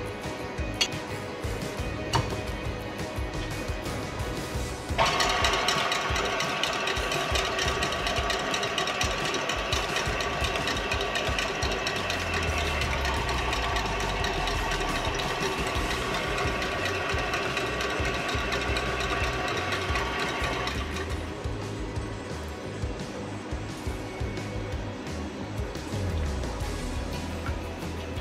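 A KitchenAid tilt-head stand mixer running with its wire whisk, beating a thin egg, milk and butter mixture in a steel bowl; the motor starts about five seconds in and stops about sixteen seconds later, with background music throughout.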